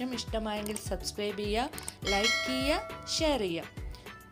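Bell-chime sound effect from a subscribe-button animation, a single ding that rings steadily for about a second in the middle, heard over background music and a voice.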